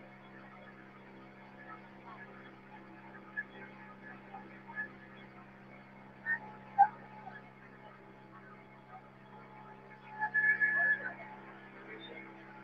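Steady low drone of a small boat's motor under way, heard faintly through a narrow, muffled live-stream sound, with scattered faint voices and a brief louder voice-like sound about ten seconds in.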